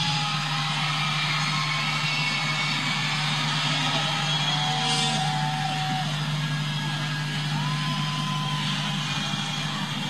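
Concert crowd cheering in a steady roar, with a few whistles, as the band stops playing, over a low steady hum.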